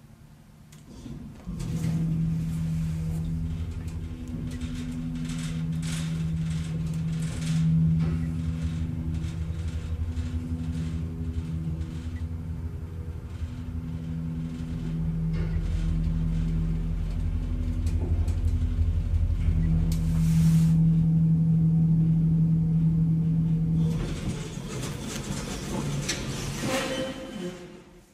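Elevator car travelling upward: a steady hum and low rumble that start about a second and a half in and run until near the end, with a noisier stretch in the last few seconds before the sound fades out.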